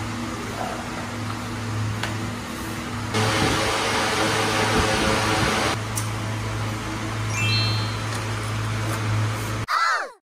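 A steady low hum runs throughout, with an even hiss lasting about three seconds in the middle. Just before the end comes a short bright chime sound effect that cuts off suddenly.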